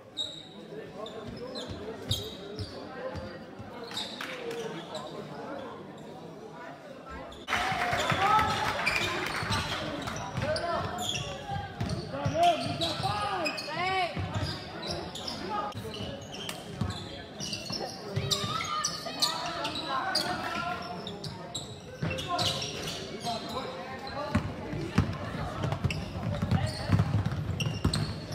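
Basketball game in an echoing sports hall: a ball bouncing on the court, sneakers squeaking and indistinct shouts from players and spectators. It gets louder about seven seconds in.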